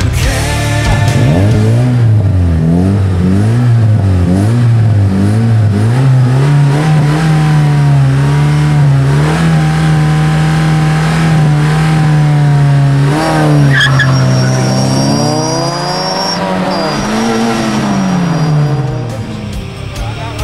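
Car engine revving: the revs rise and fall in quick blips, then are held high and steady for several seconds, then drop and swing up and down again near the end.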